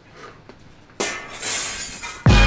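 A glass-shattering sound effect: a sudden crash about halfway through that rings on to the end, after a second of low background.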